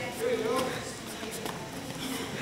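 A voice calls out briefly near the start, then a few light knocks and thuds from two young children sparring taekwondo on foam mats, their feet and kicks landing.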